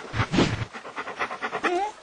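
Cartoon bear's vocal noises: a loud breathy sound about half a second in, then a short sound that slides up and down in pitch near the end.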